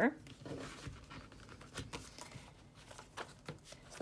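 Paper planner pages and a leather folio cover being handled: soft rustling of pages with scattered light taps and clicks.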